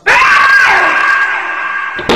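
A sudden, very loud startled scream that breaks out at once and is held for about two seconds, part of it sliding down in pitch.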